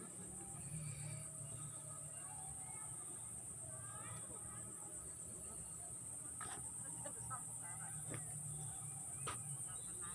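A steady high-pitched insect drone over a low rumble, with faint distant voices and three sharp clicks in the second half.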